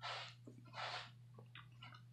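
A person's breath close to the microphone: two short puffs of breath in the first second, then a few faint mouth clicks, over a steady low hum.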